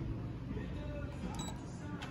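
Indoor ambience: distant voices with faint background music, steady and at moderate level, with no clear machine sound standing out.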